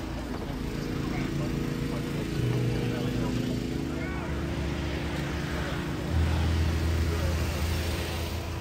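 Car show ambience: indistinct chatter of people mixed with a vehicle engine running, a steady low hum that grows louder about two and a half seconds in and again near six seconds.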